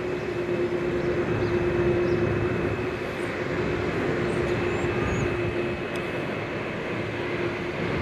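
Street traffic passing on a busy city boulevard: steady engine and tyre noise with a constant low hum that fades out near the end.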